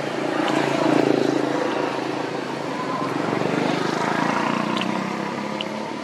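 Engine noise of a passing motor vehicle, swelling about a second in, easing, then swelling again around four seconds before fading near the end.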